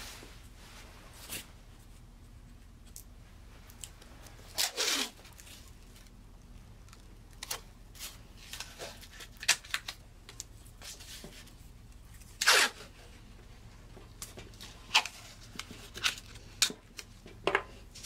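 Blue painter's tape being pulled off the roll in several short rips, with light handling clicks as it is pressed onto a wooden block.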